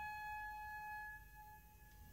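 Orchestral recording: a single soft, high held note that dies away about a second in, leaving a near-silent pause.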